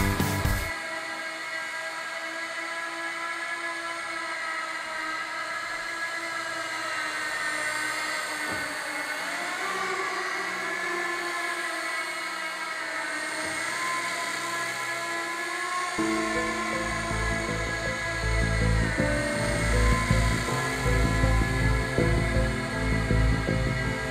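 Mini electric RC helicopter whining steadily in flight, a high-pitched motor and rotor tone that glides up and down a little as the throttle changes. Background music with a beat comes back in over it about two-thirds of the way through.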